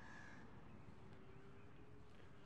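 Quiet outdoor ambience with one short bird call right at the start, and a faint steady hum afterwards.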